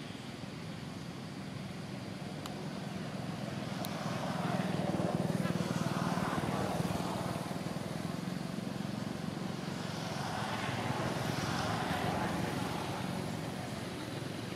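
Motor traffic passing, its engine and road noise rising and falling twice, most loudly around the middle and again near the end, over a steady low hum.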